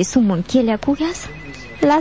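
Actors' voices from a Malagasy radio drama in the first half, then a brief, faint, steady high tone in the second half, of the kind a telephone ring makes.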